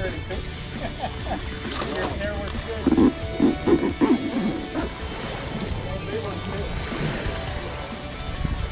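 Background music throughout, with a brief burst of voices about three seconds in.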